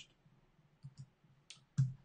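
A few faint ticks, then two sharp clicks near the end about a quarter second apart: computer mouse clicks.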